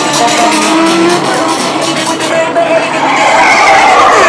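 Loud racing-car sounds with tyre squeals, mixed with music, and a screech falling in pitch near the end.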